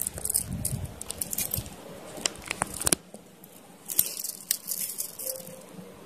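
Handling noise: light scattered clicks and rustles as a phone camera and a wristwatch are moved about by hand, busiest in the first three seconds and then quieter, with a couple of clicks around four seconds in.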